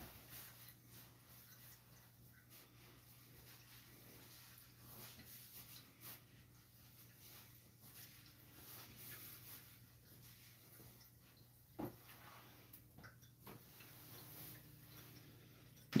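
Near silence: faint room tone with a steady low hum and a few soft ticks, one a little clearer about twelve seconds in.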